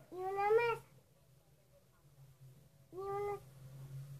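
Two short, high-pitched, meow-like calls: the first about a second long, rising slightly at the start, the second shorter and steady near the end.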